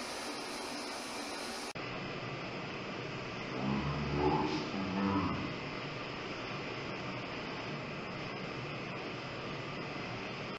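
Steady hiss of a camera recording. Briefly in the middle comes a man's voice, slowed down, low and drawn out: the replayed question "are you next to me?"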